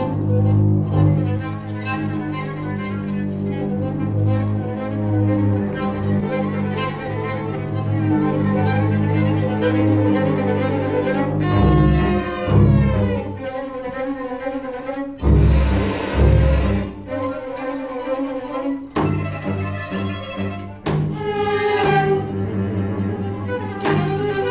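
String orchestra of violins, cellos and double bass playing: sustained low notes throughout, with pitches gliding about halfway through, a brief noisy, scratchy passage about two-thirds of the way in, and sharp accented attacks near the end.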